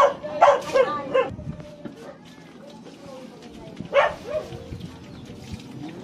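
A dog barking several times in quick succession, then once more about four seconds in.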